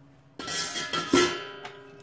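A bowl knocked against the rim of a glass baking dish: a sudden clink about half a second in, a louder knock just past a second, and ringing that fades away.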